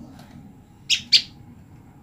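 Female common tailorbird giving two sharp, high calls in quick succession about a second in, with a fainter call just before. It is the repeated call of a female separated from her mate, calling for him.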